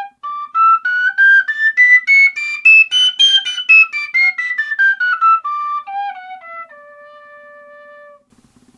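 Generation tabor pipe, a three-holed metal overtone whistle, played as a run of single notes climbing step by step to a high peak about three seconds in and then back down. The range comes from breath control bringing out the pipe's overtones. It ends on a softer held low note.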